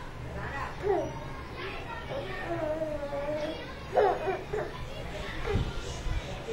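A baby babbling and cooing in a few short, gliding vocal sounds, the loudest about four seconds in, with a soft low thump near the end.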